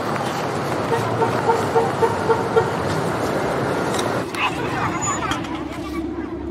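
Busy town street ambience: crowd chatter and passing traffic, with a quick run of short beeps about a second in.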